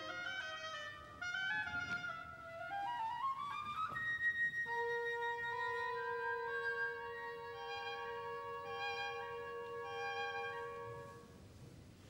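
Classical orchestral ballet music: a rising run of notes, then long held notes over lighter repeated ones, fading away near the end.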